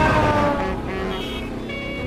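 A train passing by, its horn dropping in pitch as it goes past just after the start, over a low running rumble.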